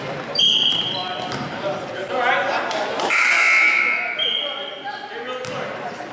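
Basketball game in a gym with an echo: several short, high squeaks of sneakers on the hardwood court, the ball bouncing and people's voices.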